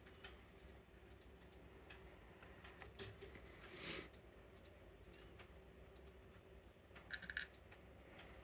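Faint small clicks and taps of brass lock pins and springs being handled and set into a wooden pinning tray while a Medeco M4 cylinder is taken apart. There is a brief rubbing sound about four seconds in and a quick cluster of clicks near the end.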